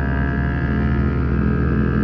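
Motorcycle engine running at a steady speed while riding, a constant drone with no change in pitch.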